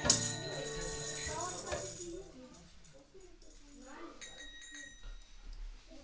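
A kirtan's final beat: a jingling strike of tambourine-like percussion rings out over a held harmonium chord, and both die away over about two seconds. Then quiet room sound with faint, scattered small noises.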